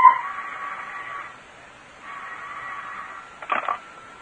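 Telephone bell ringing twice, each ring about a second long with a short gap between them, as a radio-drama sound effect. A brief sharper sound near the end, just before the call is answered.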